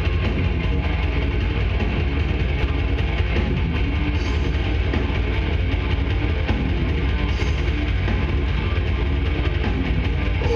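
A death metal band playing live: distorted electric guitars over a drum kit, loud and dense without a break, recorded from the crowd.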